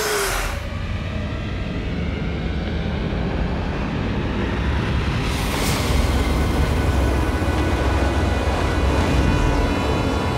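Animated action-scene sound effects: a steady low rumble with a rushing, swirling noise of bent water and mist, cut by a sharp whoosh at the start and another about five and a half seconds in, with music underneath.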